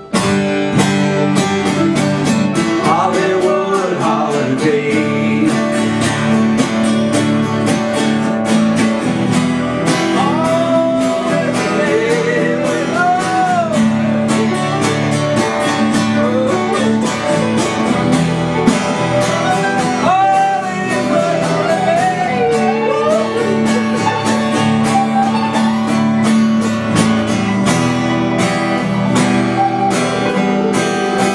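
Live acoustic band playing the song's instrumental outro: steadily strummed acoustic guitars, with a lead melody above them that slides up and down in pitch.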